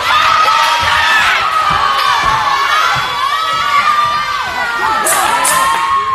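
A crowd of kids and teenagers cheering and shouting loudly, many high voices overlapping, with sharper shrieks about five seconds in.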